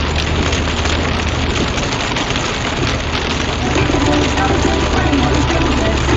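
Heavy rain hitting the windscreen and roof of a moving truck cab, mixed with the hiss of tyres and spray on a flooded motorway and a low engine drone underneath. The noise is steady, without breaks.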